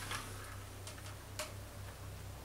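A few faint, irregular clicks from a plastic iced-coffee cup being picked up and held out to drink from, over a low steady hum.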